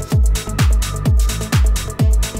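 Electronic dance track with a steady four-on-the-floor kick drum, about two beats a second, each kick dropping in pitch. Under it run sustained synth notes and bright high percussion.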